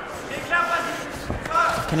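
Voices in a large hall: faint shouting from the arena about half a second in, then a man's commentary voice starting near the end.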